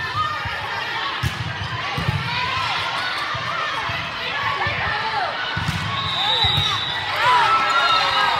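Players and spectators shouting and calling out over each other during a volleyball rally in a gym, with sneakers squeaking on the court floor and the dull thuds of footfalls and ball contacts. The voices get louder near the end as the point is won.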